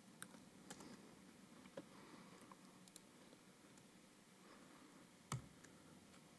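Near silence in a room, with a few faint laptop keyboard clicks scattered through it and one louder click about five seconds in.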